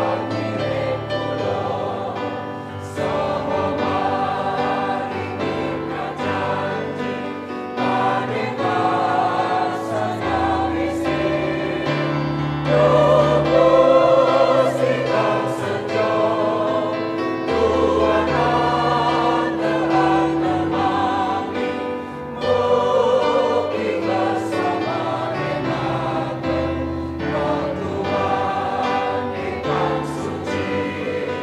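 Church choir singing a hymn with vibrato, over sustained low accompaniment notes from a keyboard that change every few seconds.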